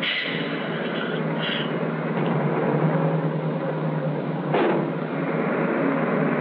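Motor coach engine and road noise, a steady rumble with a brief swell about four and a half seconds in.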